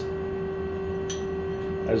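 Steady single-pitch hum of the powered-up CNC lathe, with a faint tick about a second in as a four-jaw chuck jaw is snugged with the chuck key.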